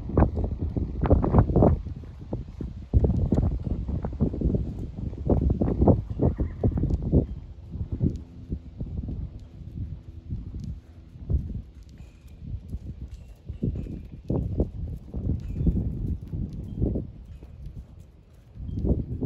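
A ridden horse's hoofbeats on arena sand at a trot: a run of dull, uneven thuds, busiest in the first seven seconds and sparser after.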